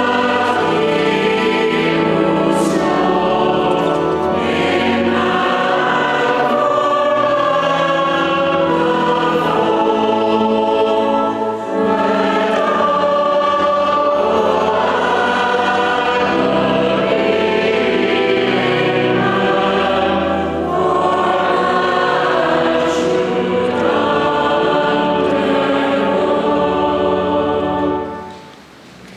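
Church congregation singing a hymn together, many voices in unison, with a brief break for breath about twelve seconds in; the singing stops at the very end.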